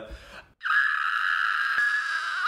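A man imitating a dial-up modem connecting with his voice: a steady, high-pitched screech that starts abruptly about half a second in and is held unbroken.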